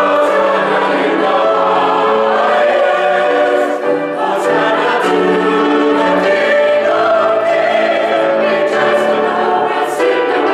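Mixed-voice church choir singing a Christmas cantata, the parts holding long notes that change about once a second.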